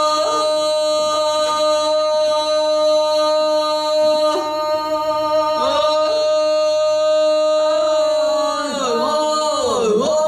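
Two women's voices singing a traditional Serbian folk song in the 'iz vika' style, a loud, open-throated kind of singing. They sing unaccompanied and hold long notes, which slide down in pitch near the end.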